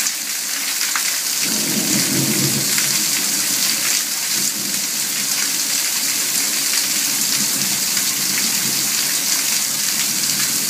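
Heavy rain pouring down onto a garden and a patio under standing water, a dense, steady hiss of drops. A low rumble joins in about a second and a half in and carries on.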